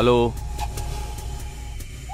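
A man's voice saying "hello" once into a phone, then a low steady hum that fades out over the next second and a half, with a few faint clicks.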